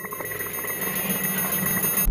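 Electronic beeping sound effect of a binocular-style targeting display: steady high-pitched tones with a fast, even ticking pattern, cutting off at the end.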